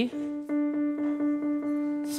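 Stage electronic keyboard sounding the single note D above middle C, held steadily with a light pulse about four times a second.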